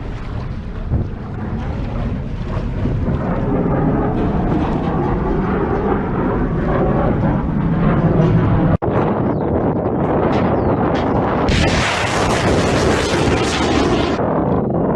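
Steady rumbling noise that grows louder, broken off by a sudden cut about two-thirds of the way through. Near the end comes a loud, harsh roar lasting about two and a half seconds: the launch blast of a Ukrainian R-360 Neptune anti-ship cruise missile leaving its truck-mounted launcher.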